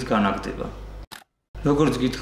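A man speaking, broken about a second in by a brief drop to dead silence, an edit cut, before his speech resumes.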